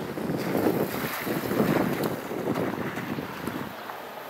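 Wind buffeting the camera microphone in uneven gusts, a low rumbling rush that eases off near the end.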